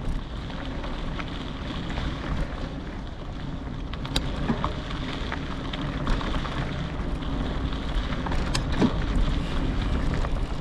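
Wind rushing over an action camera's microphone as it moves along a dirt trail, with a steady low rumble. A few sharp clicks and ticks come through, the clearest about four seconds in and again past eight seconds.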